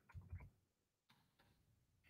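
Near silence: room tone, with a few faint clicks in the first half second.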